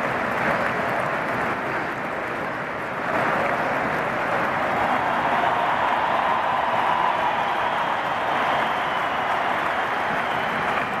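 Large football stadium crowd cheering and applauding the players, with a dense wash of voices and clapping that grows louder about three seconds in.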